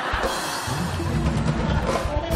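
Live band playing a loud burst of rock music, with a drum kit and a heavy bass line.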